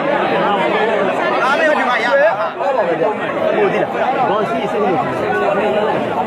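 A large crowd of spectators chattering and calling out at once: many overlapping voices making a steady hubbub, with no single voice standing out.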